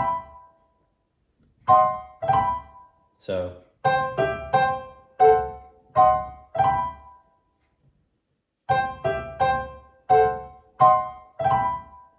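Kawai digital piano played with the right hand: a run of short, detached chords, a pause of about a second and a half, then the same passage of chords played again.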